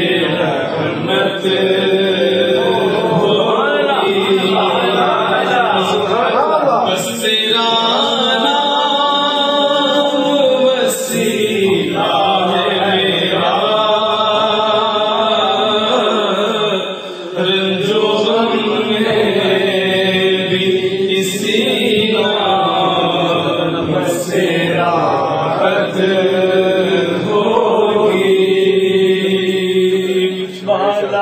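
Devotional Sufi chanting: voices carry a continuous melodic chant with long held, wavering notes over a steady low drone.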